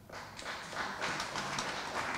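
Audience applauding: many hands clapping in a dense patter that starts suddenly and grows louder about a second in.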